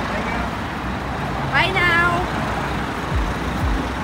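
Steady city road traffic noise, with a person's voice calling out briefly about a second and a half in. Deep, evenly spaced bass-drum thumps of music start near the end.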